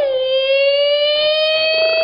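A woman's loud, long held cry on one high pitch that slowly rises, with little wavering: the drawn-out call for help "来人也" (come, someone!) in the crying style of Suzhou pingtan storytelling.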